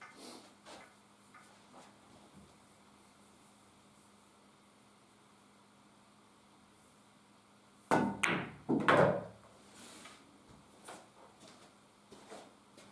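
A pool shot about eight seconds in: the cue tip strikes the cue ball and the balls clack together, then knock off the cushion and drop into a pocket. The sharp knocks come in a short cluster lasting about a second and a half, with a faint steady hum before it.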